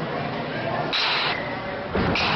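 Baseball bat hitting a pitched ball just before the end: one sharp crack, after a brief high hiss about a second in.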